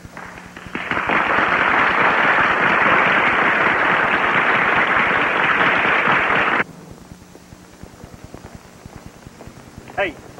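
Radio static: a loud burst of crackling hiss, thin and band-limited like a radio channel, from archival Apollo mission audio. It starts about a second in and cuts off suddenly after about six seconds.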